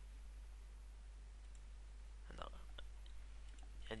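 A few faint computer-mouse clicks a couple of seconds in, over a low steady hum and hiss from the microphone.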